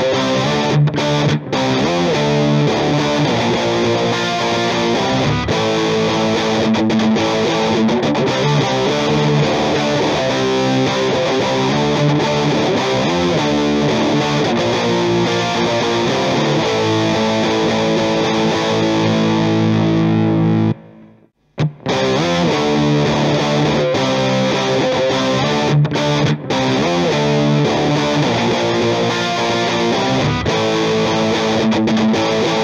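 Distorted electric guitar played through an amplifier, a recorded part running continuously. It stops about 21 seconds in and, after a second's break, the same part starts again from a second recording of it.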